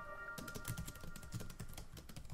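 Computer keyboard typing sound effect: a rapid run of keystroke clicks starting about a third of a second in, over the fading ring of a short chime jingle.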